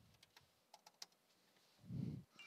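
Faint computer keyboard keystrokes: a handful of scattered, separate taps as a password is typed and submitted, each key press short and soft.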